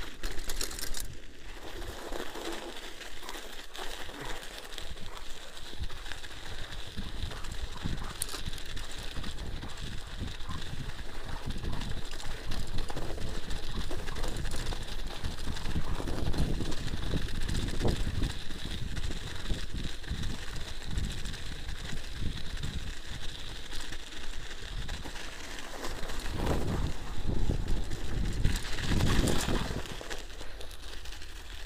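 Mountain bike ridden over packed snow: the tyres crunch and rumble on the snow, with the bike's rattle mixed in. It gets louder in the middle stretch and again near the end.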